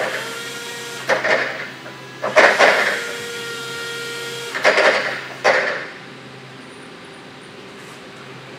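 Hydraulics of an electric Caterpillar EP25KPAC forklift being worked from the seat: the pump motor runs in short spells with a steady whine, broken by about five loud, noisy surges.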